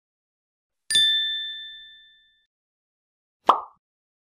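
Logo-animation sound effects: a bright, bell-like ding about a second in that rings on two clear tones and fades over about a second and a half, then a short pop near the end.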